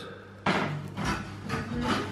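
Close-up handling noise: rubbing and light knocks as fingers handle a burger bun and the camera just above the plate, starting about half a second in.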